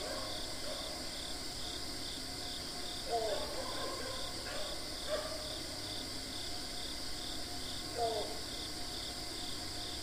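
Steady outdoor insect chorus: a constant high drone with a faster pulsing trill a few times a second under it. A few short, lower calls break in about three, five and eight seconds in.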